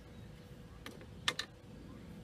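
Three short sharp clicks in quick succession a little past the middle, the second the loudest.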